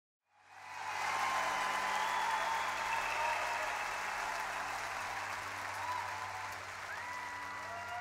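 A large theatre audience applauding, fading in during the first second and easing off slightly toward the end, with a low steady hum underneath.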